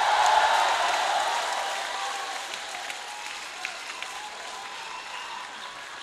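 Large concert audience applauding and cheering just after a song ends, the applause gradually dying down.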